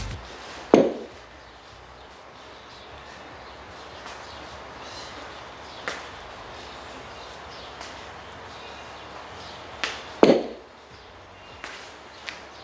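Two sharp knocks of free weights against a concrete floor, one about a second in and one near the end, with a few faint clicks between over a steady background hiss.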